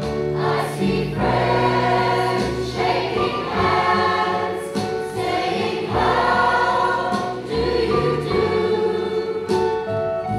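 A mixed choir of children and adults singing a song together in sustained, held notes.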